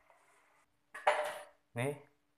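A brief knock and scrape of a stone pestle against a stone mortar (ulekan on cobek) about a second in, after a quiet start.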